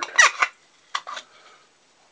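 Clear plastic screw-top storage containers being unscrewed from each other. The plastic threads give a short squeak, then a brief scrape about a second in.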